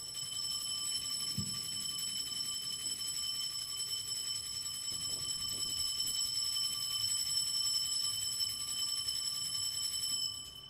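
Altar bells rung without pause as the consecrated host is elevated at Mass, a steady high, bright ringing that holds throughout and marks the elevation.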